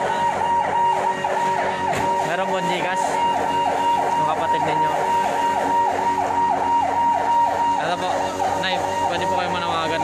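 Fire truck siren sounding in a fast yelp, its pitch sweeping down about three times a second, with a steady high tone over it that stops about eight seconds in.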